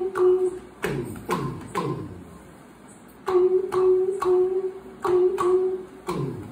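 A man singing unaccompanied, holding long notes at a steady pitch in short phrases, with a pause partway through.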